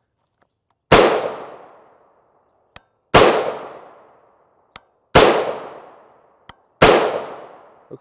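Four rifle shots from an AR-15 with a 14.5-inch barrel firing .223 Remington 55-grain FMJ, about two seconds apart, each followed by about a second of echo fading away. Faint short clicks fall between the shots.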